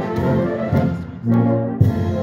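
British-style brass band playing a medley of service marches: sustained brass chords that ease off briefly about a second in, then a strong low note and a sharp accent near the end.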